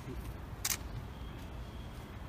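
A single short, sharp click about two-thirds of a second in, over a steady low outdoor rumble.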